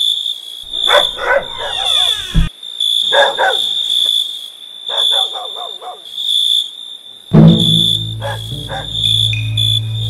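Night-time soundtrack: steady high cricket chirping, with a few short dog barks in the first half. Deep low music comes in about seven seconds in.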